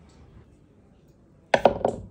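Metal teaspoon tapping against the rim of a bamboo bowl, a quick run of three or four knocks near the end, shaking dried herbs off the spoon.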